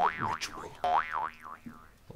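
A warbling, boing-like sound effect whose pitch wobbles up and down a few times a second. It plays twice in a row, the second burst starting just under a second in and fading by about a second and a half.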